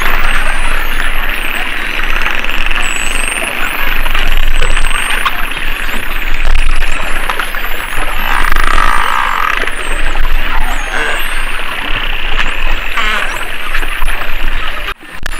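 Underwater sound of a spinner dolphin megapod: many overlapping whistles gliding up and down, with scattered clicks over a steady hiss of water. A louder buzzy call comes about eight seconds in.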